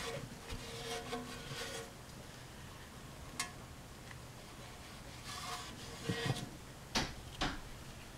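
Gloved fingers quietly rubbing and scraping through light oil sludge in the bottom of an engine oil pan. There is a sharp click about three seconds in and two more close together near the end.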